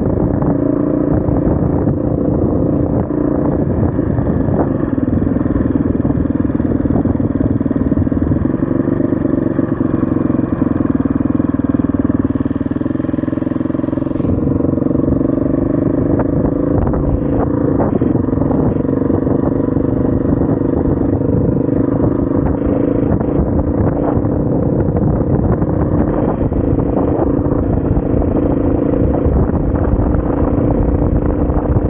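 SWM RS500R enduro motorcycle's single-cylinder four-stroke engine running under way at fairly steady revs, the pitch shifting slightly about halfway through, with rattly clatter over the engine.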